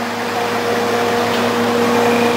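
Steady mechanical hum with a few held tones, from a vehicle idling at the kerb.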